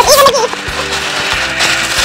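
Gift wrapping paper crinkling and rustling as wrapped presents are handled, a dense crackle starting about half a second in, over background music.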